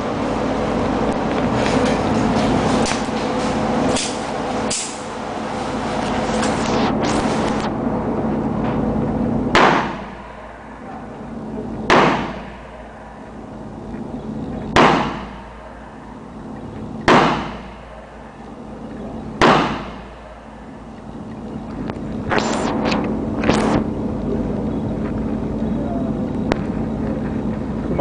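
Five shots from a Smith & Wesson Model 500 revolver firing 440-grain Corbon .500 S&W Magnum cartridges one-handed, about two and a half seconds apart, starting about ten seconds in. Each shot is a loud, sudden crack that echoes briefly off the walls of an indoor range.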